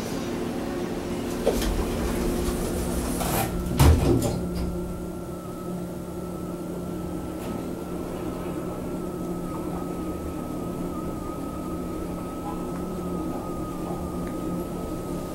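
KONE MiniSpace top-drive traction elevator: the car doors shut with a loud thump about four seconds in. The car then travels with a steady high-pitched drive whine over a constant low hum.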